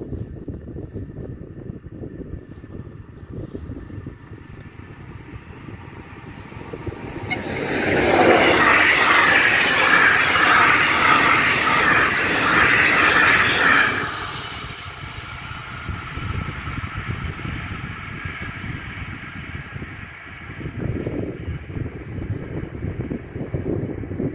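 Passenger train passing a level crossing at speed: a loud rush of wheel-on-rail noise that swells about seven seconds in and falls away about fourteen seconds in. Wind rumbles on the microphone throughout, and the crossing's warning bell rings faintly underneath.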